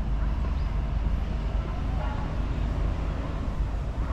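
Outdoor city ambience: a steady low rumble, like distant traffic, with faint distant voices.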